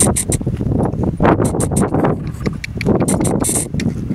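Hoofbeats of a horse cantering on grass, a run of short sharp strikes over a constant low rumble.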